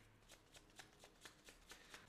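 Faint shuffling of a deck of cards by hand: a string of soft flicks of card on card.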